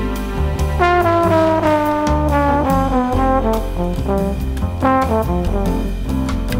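A modern jazz group playing: a horn melody with sliding, bending notes over a double-bass line and drums with cymbal strokes.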